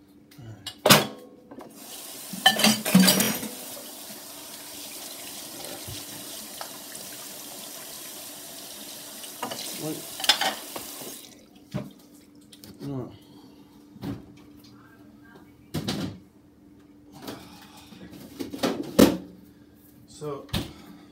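Water running from a tap, turned on about two seconds in and shut off abruptly around the middle, after roughly nine seconds. Sharp knocks and clatter of things being handled come throughout, the loudest just after the start, around the moment the water comes on, and near the end.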